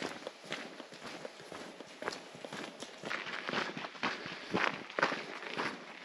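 Footsteps of people walking along a hiking trail, irregular steps about two a second.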